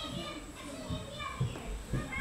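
Children's voices, talking and playing in the background.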